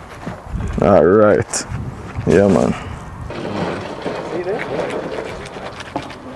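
A man's voice making two short wordless sounds, about one and two and a half seconds in. After that comes quieter handling and cutting as a knife works through a raw bird laid on a slab of green coconut.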